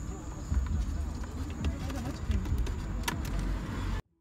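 Indistinct, muffled voices over a steady low rumble, with a few sharp clicks.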